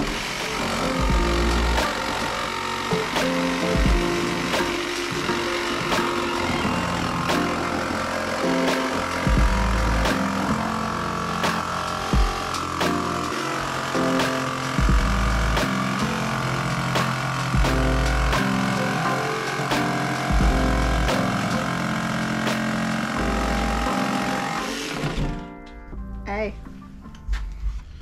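Background music with a steady beat, laid over a jigsaw cutting through a van's sheet-metal side panel. The cutting noise stops near the end.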